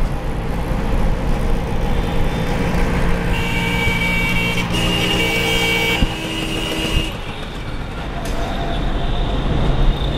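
Engine and road noise of a moving vehicle in traffic, with two long vehicle horn blasts back to back, at different pitches, from about three seconds in to about seven seconds in.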